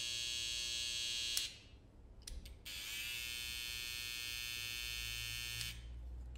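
Babyliss Skeleton FX cordless hair trimmer running with a steady high buzz, switched off a little over a second in, then, after a couple of clicks, switched on again for about three seconds and off. Its cam follower has just been replaced to quiet its noise.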